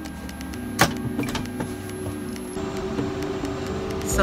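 Clicks and knocks from aircraft galley fittings being handled. The loudest is a single sharp click about a second in, followed by a few lighter clicks, all over a steady hum.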